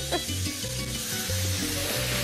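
Eggplant burger patties sizzling in a hot frying pan as liquid is poured in from a bottle, the sizzle thickening just after the start. Background music with a steady, repeating bass line plays underneath.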